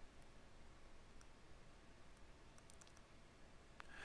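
Near silence: faint room hiss with a few faint clicks from a stylus tapping on a tablet screen as a word is handwritten.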